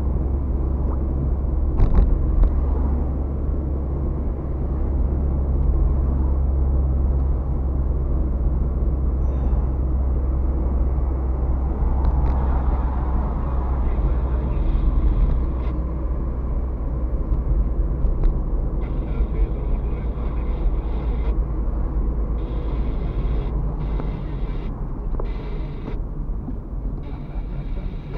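Car cabin noise picked up by a windscreen dashcam while driving: a steady low engine and road drone with tyre noise, and a sharp knock about two seconds in. The drone eases over the last few seconds.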